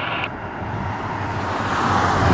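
A car passing close by on the road, its tyre and engine noise building toward the end.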